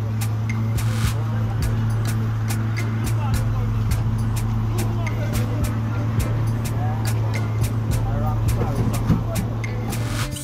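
A vehicle engine idling with a steady low hum, under indistinct voices and scattered clicks.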